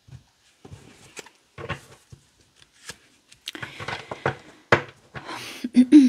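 A tarot deck being picked up off a wooden table and shuffled by hand: scattered light taps and slides of cards at first, then denser rustling of cards with sharp clicks from about halfway through.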